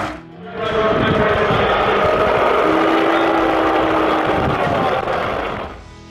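Large stadium crowd booing, a steady wash of many voices that swells in about a second in after a brief lull.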